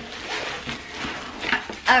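Rustling and scraping of a cardboard shipping box and the packaging inside as it is opened by hand.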